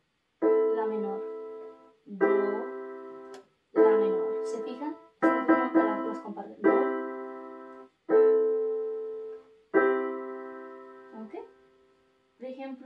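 Electronic keyboard in a piano voice playing block chords, C major and A minor in turn, which share two notes. About seven chords, each struck and left to fade, with a few quicker strikes in the middle.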